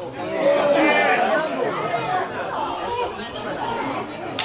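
Several voices shouting and calling out across a football pitch during live play, overlapping, loudest in the first second and a half.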